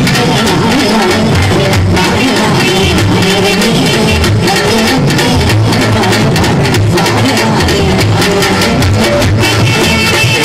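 Loud live band music with steady drum beats and a bass line, played through a stage sound system, with a woman and a man singing a Tamil song duet into microphones.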